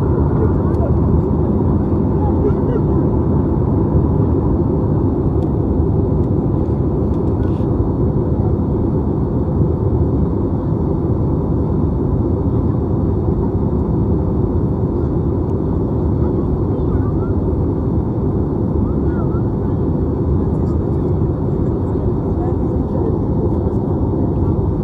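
Steady cabin drone of an Airbus A320-family airliner in cruise, its jet engines and rushing airflow heard from inside the cabin at a window seat.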